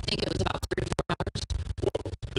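Garbled, choppy audio broken by rapid dropouts several times a second over a low hum, giving a stuttering, scratchy sound: a glitching recording feed.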